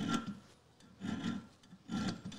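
Small auger bit file rasping across the cutting edge of a steel auger bit to sharpen it: two short strokes about a second apart.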